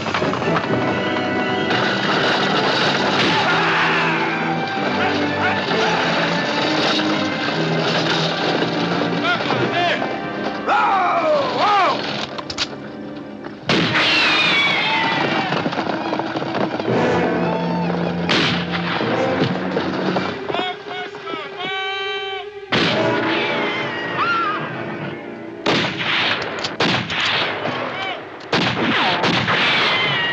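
Western film score music playing over a horseback chase, with voices yelling in falling glides and, in the last few seconds, a cluster of gunshots.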